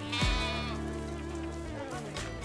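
A sheep bleats once, a wavering call in the first second, over background music with a deep, regular drum beat.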